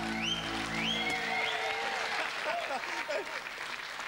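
The song's last guitar chord rings and stops about a second in, under applause and cheering from a studio audience, with high rising whoops near the start and voices calling out in the crowd.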